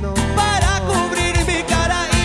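Live cumbia band playing: timbales and cymbals keeping a steady beat under bass, keyboards and trumpets, with voices singing.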